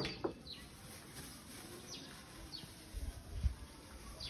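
A bird giving short, high chirps that slide downward, repeated every half second or so, over outdoor background noise. A few low bumps are heard about three seconds in.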